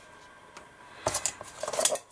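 A metal ruler being picked up off a cutting mat: a sharp click about a second in, then about a second of metallic scraping and clatter.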